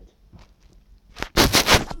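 Handling noise of a phone being picked up: a few faint clicks, then about half-way through a loud, short burst of rubbing and knocking right on the microphone.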